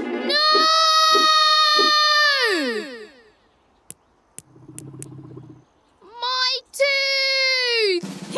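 A cartoon character's voice gives two long wordless cries, each held on one pitch and then sliding down at the end. A few faint clicks and a short low hum come in the gap between them.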